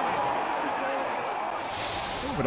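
Football stadium crowd: a steady mass of many voices with no single voice standing out. A high hiss comes in near the end.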